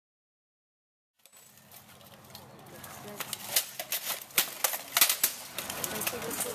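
Armoured fighters' swords striking each other, a shield and armour: an irregular run of sharp cracks and clacks. It starts about a second in, and the hardest blows come close together near the end.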